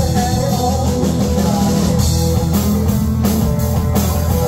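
Live rock band playing: electric guitar, electric bass and drum kit together, loud and steady.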